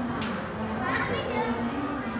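Children's voices and chatter, with a single sharp click a moment in.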